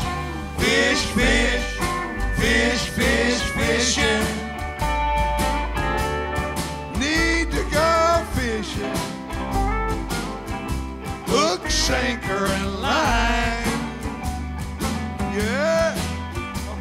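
Live blues band playing, with electric guitar lines over bass and drums keeping a steady beat.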